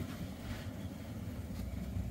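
Low, steady rumble of a car, heard from inside the cabin.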